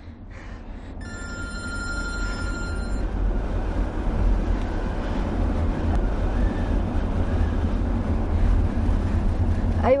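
A mobile phone rings about a second in, a steady multi-tone ring lasting about two seconds. Underneath is the steady low rumble of road noise inside a moving car, which grows louder over the first few seconds.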